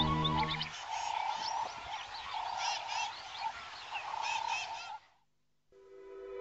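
Cartoon jungle ambience of frogs croaking in repeated pulses and birds chirping, coming in as the music stops about a second in. It cuts off about a second before the end, and new music begins right at the end.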